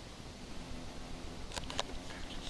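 Quiet outdoor background noise with a faint steady low hum, then a quick cluster of small sharp clicks about one and a half seconds in.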